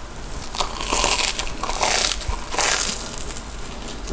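Crisp crunching from biting and chewing a deep-fried corn dog coated in potato cubes, heard close to the microphone. There are several loud crunches about a second apart.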